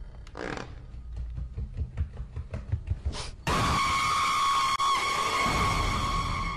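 Irregular clicks and scrapes of footsteps on loose rock, with two brief swishes. About three and a half seconds in, a loud steady ringing tone with overtones cuts in suddenly and holds: an added music or sound-effect drone.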